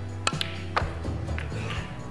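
Snooker cue striking the cue ball, then the balls knocking together: three sharp clicks within the first second, over steady background music.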